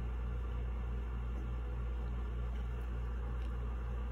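A steady low hum with a slight even pulsing, with faint pen strokes on paper.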